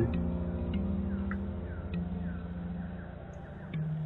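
Quiet room tone between narrated sentences: a low steady hum with a few faint, scattered ticks.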